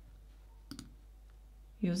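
A computer mouse click, a quick press-and-release pair, about three-quarters of a second in, over quiet room tone.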